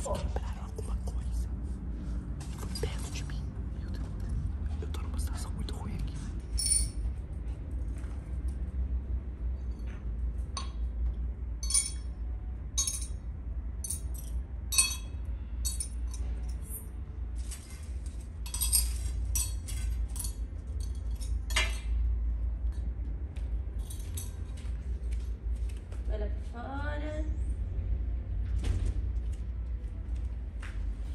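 Scattered light clinks and taps of small hard objects such as glass or metal, irregularly spaced over a steady low hum. Near the end comes a brief pitched sound that rises and falls.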